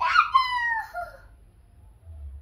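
A young child's high-pitched squeal, one voiced cry about a second long that falls in pitch.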